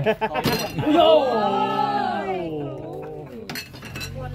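A clink of dishes about half a second in. Then comes one long, drawn-out vocal sound from a person, wavering and falling in pitch for over two seconds.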